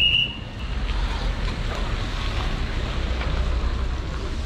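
A mountain bike getting under way on a wet road: steady rushing of wind on the microphone and tyre noise on wet asphalt. A short high tone sounds at the very start.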